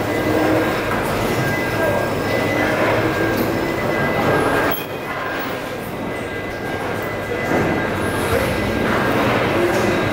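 Loud, steady background rumble and hiss with a faint high hum and distant voices mixed in; it quietens abruptly about halfway through and swells back up near the end.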